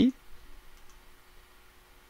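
A few faint computer mouse clicks over quiet room tone, made while drawing edges with SketchUp's pencil tool.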